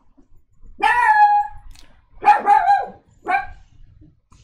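A dog singing: three pitched howling calls, the first long and held, the last short.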